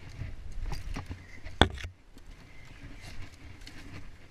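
Scuffs, scrapes and knocks of a caver climbing a rocky dirt slope on a rope, with low rumbling from the body-worn camera. One sharp, loud knock comes about a second and a half in.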